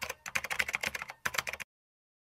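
Typing sound: a rapid run of key clicks as on-screen text is typed out. It stops abruptly about one and a half seconds in, followed by dead silence.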